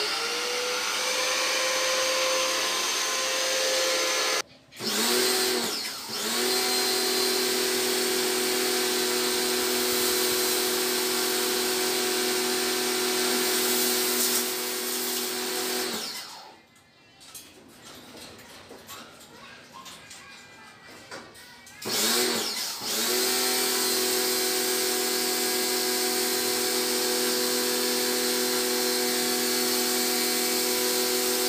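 Portable electric high-pressure washer's motor and pump running with a steady whine. It stops briefly just before five seconds in, and again for about six seconds from around sixteen seconds, while the spray gun is not spraying, and each time it starts up again with a rising whine.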